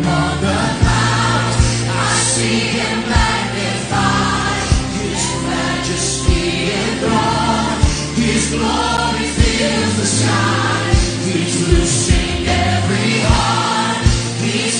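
Live gospel worship song: a male lead singer and a choir of backing voices singing over a band of electric guitar, bass and drums with a steady beat.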